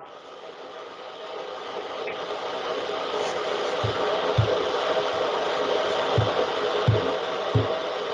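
Electric coffee grinder running on an open video-call microphone: a steady whirring that builds over the first few seconds, with a few low knocks in the second half.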